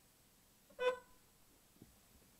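A single short car-horn toot, about a second in.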